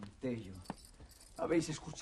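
A man's voice speaking in short phrases, with one sharp metallic click a little under a second in.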